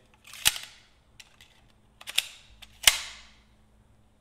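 Metabo HPT NT65M2 16-gauge pneumatic finish nailer firing three times, each shot a sharp crack with a short hiss trailing off. The last two shots come less than a second apart.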